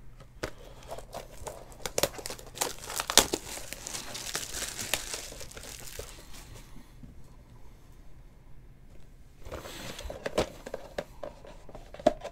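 Plastic wrapping on a trading-card box crinkling and tearing as it is handled and stripped off, full of small clicks and rustles. It goes quiet for a couple of seconds past the middle, then the crinkling starts again.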